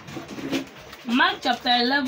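A man's voice at a microphone in a small room. A short burst of speech starts about a second in and ends on a drawn-out syllable.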